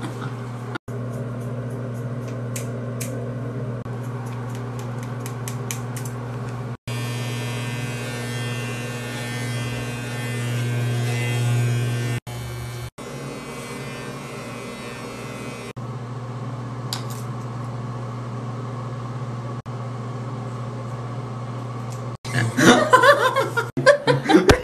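Electric hair clippers buzzing steadily while cutting hair, heard in several short takes joined by abrupt cuts. Voices and laughter come in near the end.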